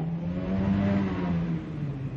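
Low hum of a motor vehicle engine, its pitch rising slightly and then easing back down.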